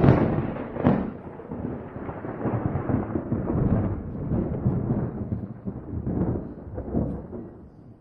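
Thunder from a nearby lightning strike, rolling and rumbling in uneven surges, loudest at the start and dying away near the end.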